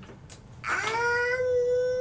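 A young child's long, drawn-out "ummm" while thinking of an answer, a single hum that starts about half a second in, rises briefly and is then held at one steady pitch.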